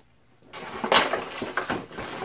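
Packaging being handled inside a cardboard box: irregular rustling with a few sharp knocks, starting about half a second in after a brief hush, as a taped-in accessory is worked loose.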